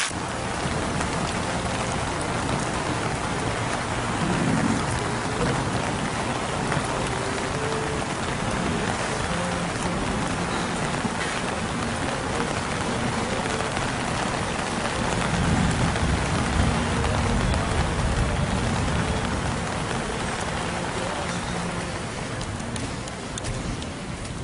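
Steady rain falling on a wooden pier and the water around it, an even hiss throughout. A low rumble swells in about four seconds in and again, longer, in the middle.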